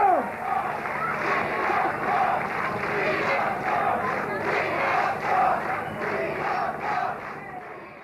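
Large outdoor concert crowd cheering and chanting in a steady rhythm, about one swell every half second or so, just after the last note of the song falls away. It fades out near the end.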